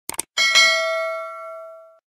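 Two quick mouse-click sound effects, then a notification-bell ding that rings with several steady tones and fades, cut off near the end.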